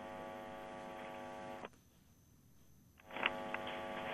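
A faint, steady buzzing tone on a telephone line that stops abruptly after under two seconds; after a moment of silence the line opens with faint hiss and small clicks as a call connects.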